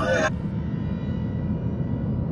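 A low, steady rumble with a faint high hum above it, after a man's voice finishes a phrase in the first moment.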